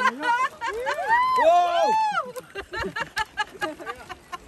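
Several people shrieking and calling out excitedly in overlapping high calls that rise and fall, for about the first two seconds. After that comes a run of quick, sharp clicks and taps.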